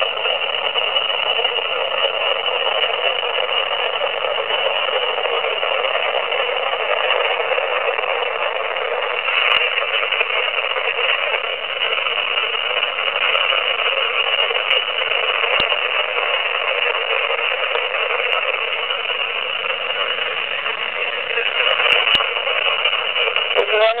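AM radio static played back through a handheld voice recorder's small speaker: a steady hiss with no bass, broken only by a few faint clicks.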